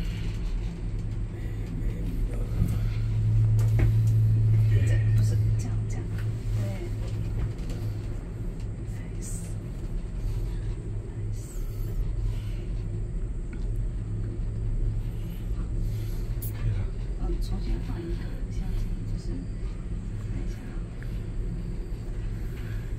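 Steady low rumble inside a moving Ngong Ping 360 cable car cabin as it travels along the ropeway, swelling louder for about two seconds near the start.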